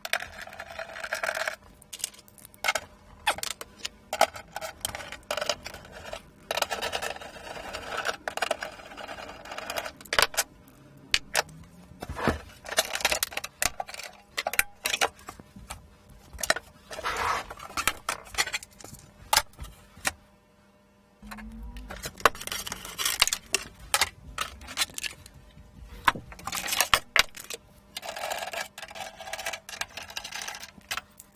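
Screws being undone with a hand screwdriver and plastic cover panels being handled and lifted off a metal equipment chassis: a run of irregular clicks, knocks and scrapes, with a short lull about two-thirds of the way through.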